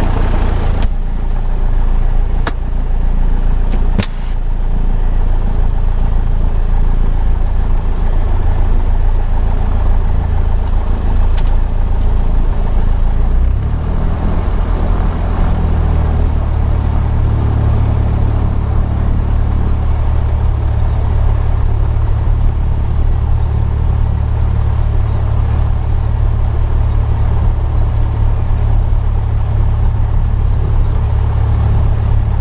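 Piper PA-28's piston engine and propeller running steadily at idle, heard from inside the cabin, with a few sharp clicks in the first seconds. About halfway through the engine note rises as the throttle is opened a little, then holds at the higher speed.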